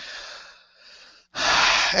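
A man laughing breathily into a headset microphone, airy with hardly any voice in it; about a second and a half in, a louder rush of breath hits the microphone.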